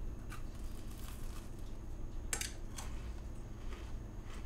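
Steady low room hum with a few short crunching clicks, the sharpest a little past halfway: a crunchy cereal-topped cookie being chewed.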